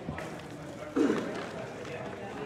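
Background chatter of people talking, with one nearby voice briefly louder about halfway through.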